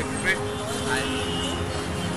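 Steady hum of road traffic on a city street, with men's voices over it.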